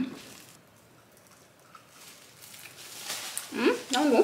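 Mostly near silence, a quiet room tone, between a short hummed 'mm' at the start and her voice coming back near the end.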